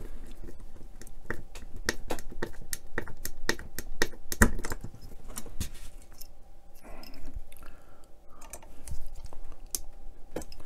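A small screwdriver turning a tiny screw into a plastic cable clamp on a model truck's chassis beam, giving quick, irregular clicks and ticks of metal on plastic. The clicking is dense for about six seconds, then thins to a few scattered taps.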